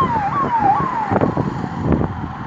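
A vehicle siren sounding a fast rise-and-fall cycle about two and a half times a second, cutting off about a second in, over loud background noise.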